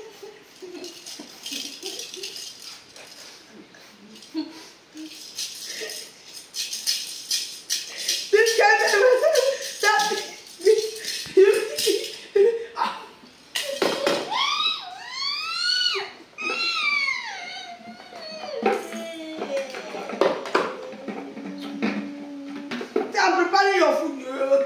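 Rattling and clicking of small plastic baby toys and bottles through the first half. About fourteen seconds in come high wordless wails that sweep up and down in pitch, an adult's mock baby cry, followed near the end by a low steady hum.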